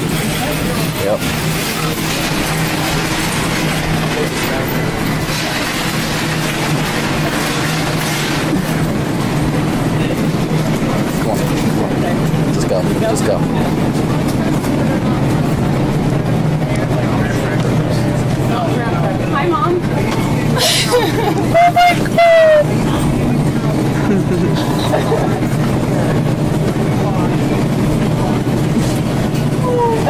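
Busy supermarket ambience: indistinct chatter and movement over a steady hum. About two-thirds of the way in comes a short, very loud high-pitched cry in two quick parts.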